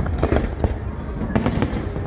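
Aerial fireworks bursting: several sharp bangs come in two quick clusters, over a continuous low rumble of the barrage.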